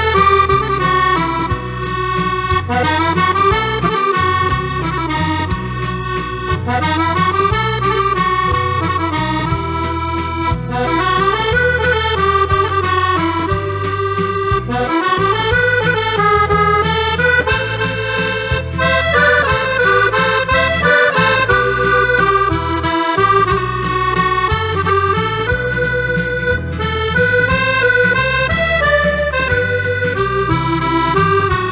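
Chromatic button accordion playing a waltz melody, with band accompaniment and a bass line that moves about once a second.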